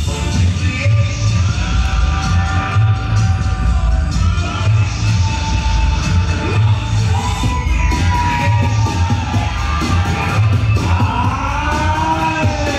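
Dance-battle music played loud over the hall's sound system: a heavy, pulsing bass beat with held melodic and vocal lines above it.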